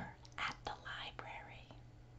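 A woman whispering a few soft, breathy words.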